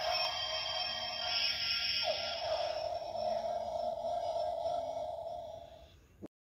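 Electronic sound effect played from the DX Evoltruster toy's built-in speaker: a held electronic tone that starts suddenly, with a downward swoop about two seconds in, tailing off near the end.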